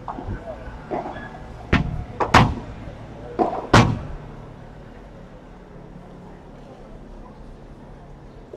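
Padel rally: a run of sharp hits as the ball is struck back and forth, about five in under three seconds, the loudest two about halfway and near the middle of the run's end; after that only a steady background hum.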